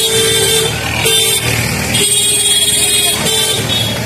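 A vehicle horn honking in long, steady blasts over street noise. It breaks off briefly about a second in and again shortly before the end.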